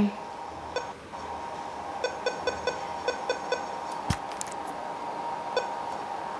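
Key-press beeps from a Motorola MBP38S-2 baby monitor parent unit being worked through its menus: a single beep, then a quick run of about eight beeps, then one more near the end. A single thump comes about four seconds in.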